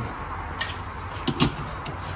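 LPG filling nozzle and its screw-on adapter being handled: a few light clicks and knocks, the loudest about a second and a half in, over a steady low hum.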